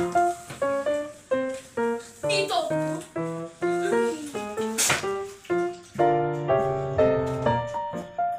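Background piano music: a simple melody of single notes, each struck and fading, with fuller chords from about six seconds in.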